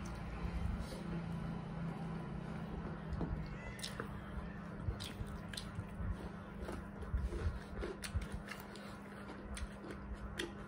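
Two people chewing and smacking their lips as they eat rice by hand, with many short wet clicks, more frequent in the second half, over a steady low hum.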